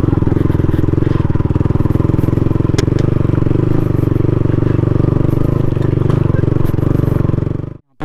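Motorcycle engine running steadily as the bike climbs a rough, rocky dirt track, with a single sharp knock about three seconds in. The sound cuts off suddenly just before the end.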